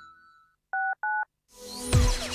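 Two short touch-tone (DTMF) beeps in quick succession, each a pair of steady tones held about a quarter second, the lower tone of the second beep slightly higher than the first. Before them music fades out, and near the end a jingle with falling swooping tones starts up.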